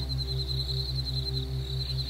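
Soft ambient background music: a steady low drone with a low tone pulsing about five times a second, and a thin, high, held tone above it.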